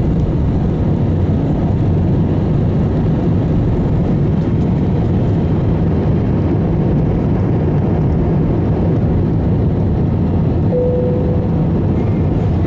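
Jet airliner at takeoff heard from inside the cabin: a loud, steady rumble of the engines and airframe as the plane leaves the runway and climbs. A short steady tone sounds about a second before the end.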